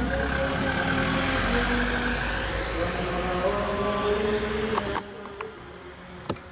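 A motor vehicle passing close by, a low rumble and rushing noise that swells and then fades, cut off abruptly about five seconds in; a few sharp clicks follow near the end.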